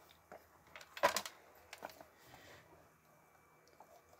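Plastic casing of a Texecom Veritas 8C alarm control panel handled and turned over in the hand: a few light plastic clicks and taps, with one sharper knock about a second in.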